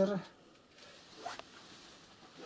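Pen writing on paper, faint, with one short scratchy stroke a little over a second in; a man's word trails off at the very start.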